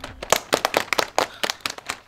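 A small group of children clapping their hands: a quick, uneven run of sharp claps, several a second.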